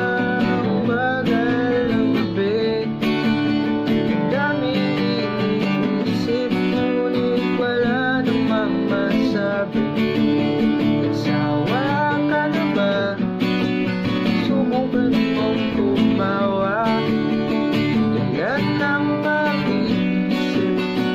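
Acoustic guitar strummed in a steady down-up pattern through the chord progression G, B minor, A minor, D. A pitched melody line slides between notes above the strumming.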